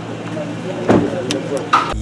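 Several voices talking at once around a car, with one sharp thud about a second in as the car door is shut.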